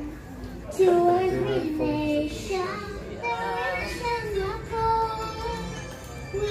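A young girl singing into a handheld microphone, holding long notes that glide from one pitch to the next.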